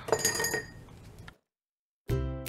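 A brief light clink with a few ringing tones, fading out within about a second, then dead silence where the audio cuts off.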